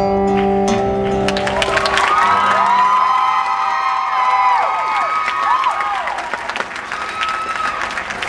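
Last acoustic guitar chord ringing out, then an audience breaks into applause and cheering about a second and a half in, easing off near the end.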